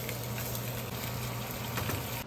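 Slices of Spam sizzling in oil in a frying pan on a gas stove, a steady crackle over a low hum.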